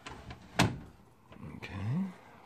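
A single sharp snap a little over half a second in as the DLP TV's plastic projection-unit housing is worked loose by hand and shifts, with lighter handling clicks around it.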